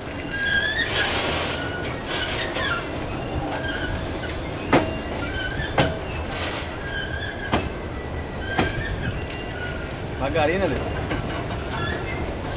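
Freight train of covered hopper cars rolling past close by: a steady rumble of wheels on rail, broken by short, recurring high squeals from the wheels and a few sharp clicks. The squeal is put down by an onlooker to a noisy wheel bearing.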